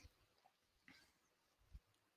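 Near silence: room tone, with one faint low bump near the end.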